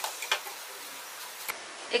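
Hot oil sizzling steadily in a kadhai as fried paneer popcorn is lifted out with a wire spider skimmer. A few light metal clicks near the start and one more about one and a half seconds in.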